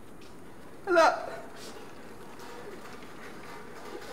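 A short excited vocal squeal, falling in pitch, about a second in, over a steady low background hiss.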